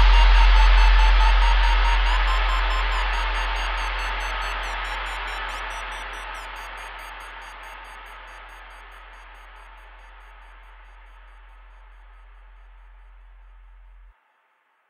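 A steady low hum under a broad hiss of noise, fading out evenly over about ten seconds, then holding faint until it cuts off suddenly at the end.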